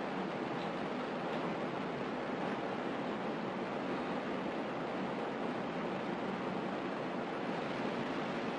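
Steady, even hiss of classroom room tone, with no other event standing out.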